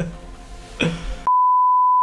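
Brief laughter, then, just over a second in, a steady high-pitched test-tone beep starts abruptly and holds unchanged: the reference tone played with a colour-bar test card.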